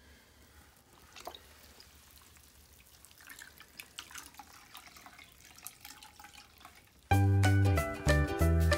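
Faint water sounds, small splashes and drips, as a knitted sweater is worked down into a bucket of water to soak before blocking. About seven seconds in, loud background music with plucked guitar and a beat starts abruptly.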